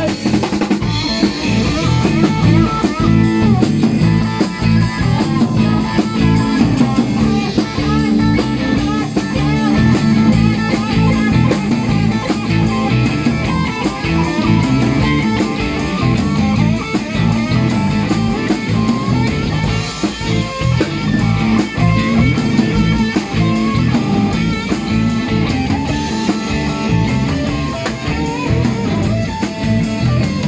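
Live band playing an instrumental passage: drum kit keeping a steady beat under electric bass and electric guitar.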